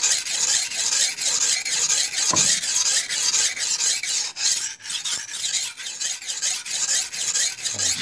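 A leaf-spring-steel knife blade stroked rapidly back and forth on the wet coarse side of a Diamond-brand (ตราเพชร) sharpening stone: a continuous gritty rasping of quick strokes, briefly broken about halfway. The stone is biting into the steel well.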